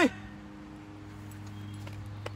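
Quiet background with a steady low hum and faint outdoor noise; no distinct event.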